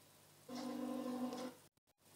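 A single held pitched note, about a second long, playing through the television speaker while channels are being switched, with the sound cutting out completely a few times near the end.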